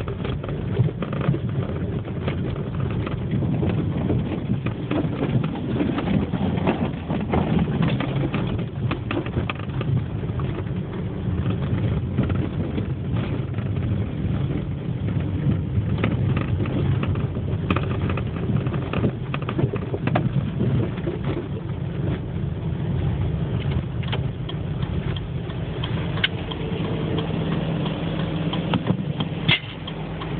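Car driving on snowy roads, heard from inside the cabin: a steady low engine hum and road noise, with scattered light clicks.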